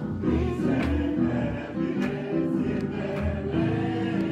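Gospel music: singing with keyboard and drum accompaniment, with steady drum and cymbal strokes.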